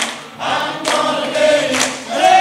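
A choir singing in long held notes. The voices drop away briefly near the start and then come back in together.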